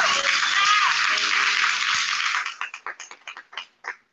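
Audience applauding after a dance number, with a brief cheer early on. About two and a half seconds in, the clapping thins to a few scattered claps that die out near the end, over the tail of the music.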